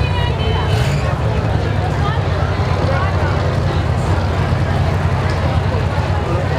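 The V8 engines of several stationary demolition-derby cars run steadily with a deep drone, under a steady din of crowd chatter.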